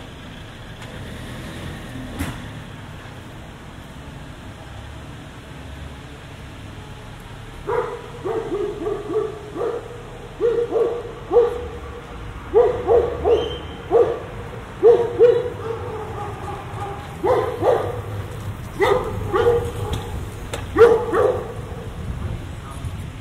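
A dog barking repeatedly in clusters of several barks, starting about eight seconds in and going on to near the end, over low street ambience.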